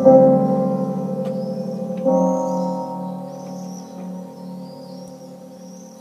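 Stage keyboard with an electric-piano voice playing slow, sustained chords: one struck at the start and a new one about two seconds in, each left to ring and fade away with a slow, wavering tremolo.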